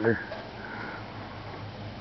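The end of a spoken word, then quiet breathing or a sniff close to the microphone in the pause between phrases.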